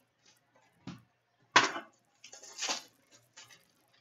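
Trading cards being handled and flipped through: a few short slaps and sliding swishes of card stock, the sharpest about a second and a half in, followed by a longer shuffling rustle and some faint ticks.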